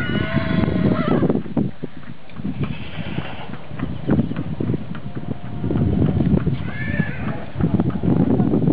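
A horse whinnies at the start, one long call lasting about a second, and gives a shorter call about seven seconds in. Between the calls the hooves of a trotting foal clop on paving.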